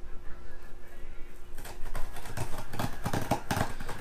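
Scissor blade cutting and scraping along packing tape on a cardboard box: a run of quick, irregular scratches and clicks starting about a second and a half in, over a faint steady hum.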